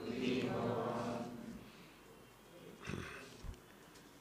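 A man's chanting voice trailing off at the end of a Sanskrit verse line, then a mostly quiet room with a short breath-like sound about three seconds in and a faint click just after.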